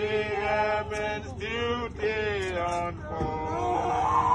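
Voices singing a slow hymn unaccompanied, in long held, wavering notes.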